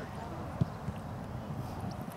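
A soccer ball kicked on artificial turf: one sharp dull thump about half a second in and a lighter one shortly after, over a steady low rumble of wind on the microphone.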